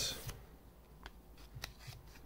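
Trading cards being flipped through by hand: a few faint, short flicks of card stock, about a second in and again near the end.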